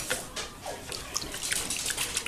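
Milk being stirred into crumbled sausage and flour in an electric skillet with a spatula, making wet sloshing sounds and irregular clicks and scrapes of the spatula against the pan.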